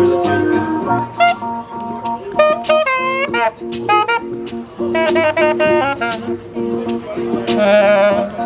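Saxophone playing a melody with quick runs, over a steady acoustic guitar accompaniment, both instruments amplified as a live duo.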